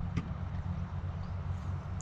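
Steady low rumble with a faint hiss of outdoor background noise, and one faint click a fraction of a second in.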